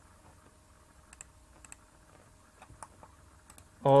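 Faint scattered clicks of a computer mouse and keyboard, several coming in quick pairs, over low room noise. A man's voice starts speaking right at the end.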